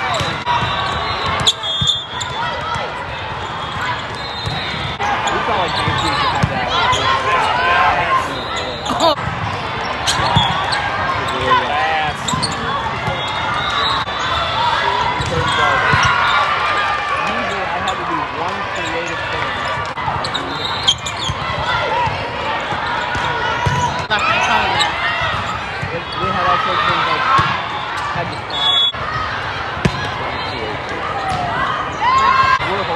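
Volleyball rally sounds in a large sports hall: players and spectators calling out and chattering throughout, with the sharp smack of the ball being hit a few times.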